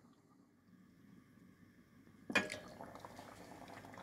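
Near silence for about two seconds, then a sudden knock followed by the soft bubbling of thick pumpkin soup simmering in a pot.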